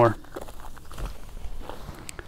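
Faint scuffs on a dirt trail and soft knocks as a person sits down into a folding camp chair, with a low thump about a second in.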